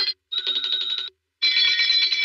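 Hand bells rung rapidly and frantically in bursts of fast clanging strokes with a bright ringing tone, broken by short silent gaps.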